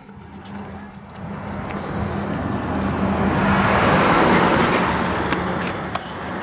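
A car driving past, its engine and tyre noise swelling to a peak about four seconds in and then fading away.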